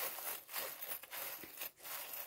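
Soft, irregular rustling of a cloth bag as a hand rummages through the charms inside it.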